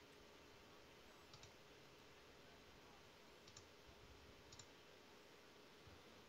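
Near silence with a faint steady hum, broken by a few soft paired clicks about a second and a half, three and a half, and four and a half seconds in.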